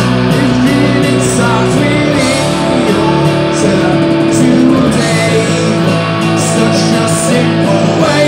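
A small rock band playing an instrumental passage: electric guitar with held, bending notes over an electronic drum kit with regular cymbal hits.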